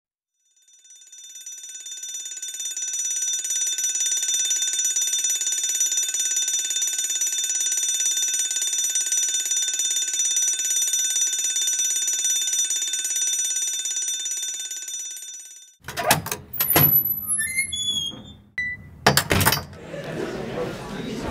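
Electric school bell ringing continuously. It fades in over the first couple of seconds and cuts off about four seconds before the end. Then come a few sharp knocks and thuds mixed with short high squeaks.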